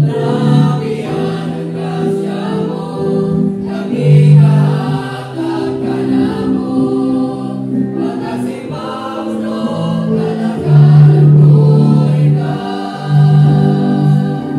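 Mixed choir of women and men singing together in harmony, holding long notes, growing louder about eleven seconds in.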